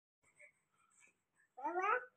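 A six-month-old baby's short vocal squeal, about half a second long near the end, its pitch rising slightly.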